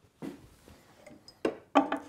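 A few faint clicks and light knocks from tools being handled, with one sharper click about one and a half seconds in.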